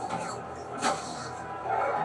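Soundtrack of a TV drama fight scene: a short, sharp hit-like sound about a second in, then music swelling near the end.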